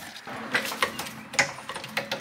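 A hydraulic floor jack being pumped to lift the car, giving irregular metallic clicks and clunks, several in two seconds.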